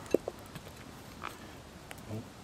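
A few faint, short ticks and a soft knock as a cleaver slices through a peeled potato onto a wooden board.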